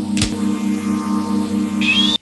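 Electronic sound effect of the TARDIS console dematerialising: a steady pulsing hum in several low tones, with higher tones joining about a second in and a rising whine near the end.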